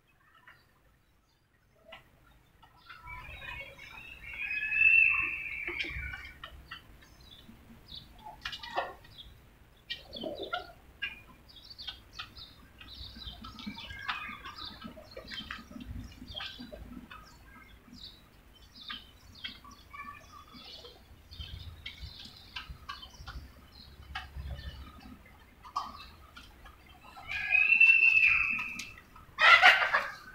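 Domestic chickens clucking and calling, starting about three seconds in, with two louder drawn-out calls of a couple of seconds each, one about four seconds in and one near the end.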